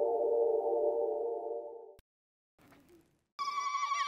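A steady, sustained electronic tone, the sound of a logo sting, fades out about two seconds in. After a short silence, a high, wavering melodic line starts abruptly near the end.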